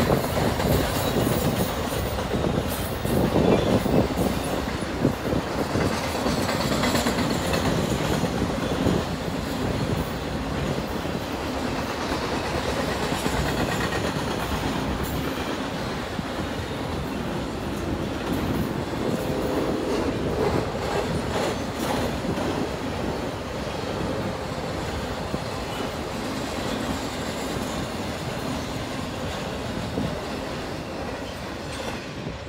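Intermodal freight train's cars rolling past at steady speed: wheels rumbling and clacking over the rail joints. The sound slowly gets quieter over the second half.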